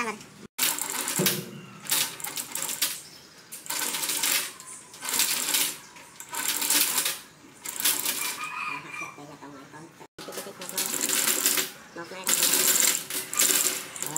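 Repeated metallic clinking and rattling in bursts about a second long, from a steel crankshaft and its chain hoist as the crank is lowered and worked into the main bearing saddles of a large engine block.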